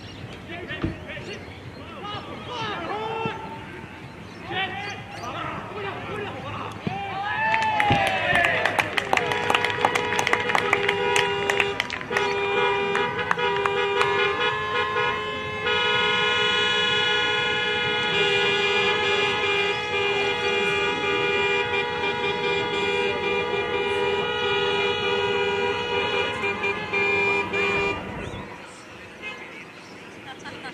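Several car horns honking together, first in short toots and then in long blasts, for about twenty seconds before stopping near the end. Before the horns start there is shouting and clapping.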